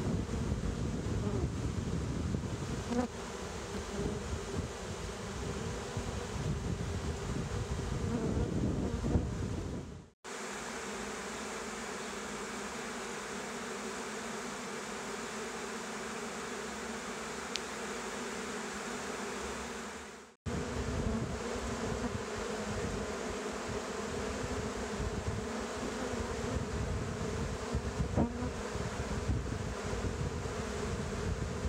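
Honeybee swarm buzzing steadily as it moves into a wooden box, with many bees fanning their wings at the entrance to call in the rest of the swarm. The sound cuts out briefly twice, about ten and twenty seconds in.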